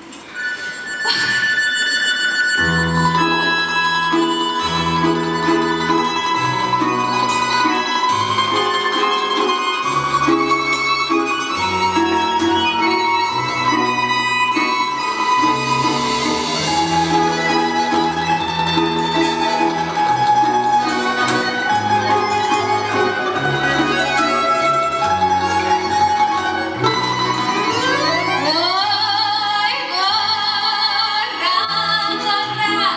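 Ensemble of Russian folk instruments (balalaikas, contrabass balalaika, button accordion, flute, guitar and cajon) playing an up-tempo instrumental introduction, with a bass line moving in steady steps under a held melody. Near the end a rising glissando sweeps up, leading into the vocal entry.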